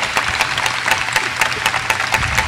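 Audience applauding: many hands clapping at once in a dense, even patter.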